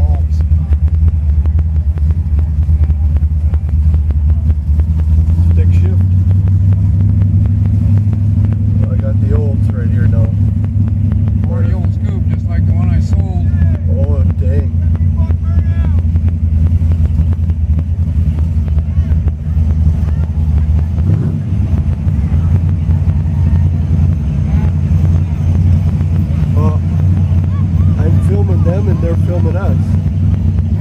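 A 1967 Oldsmobile Cutlass convertible's engine rumbles steadily as the car cruises slowly in traffic, heard from inside the car. Indistinct voices can be heard faintly behind it.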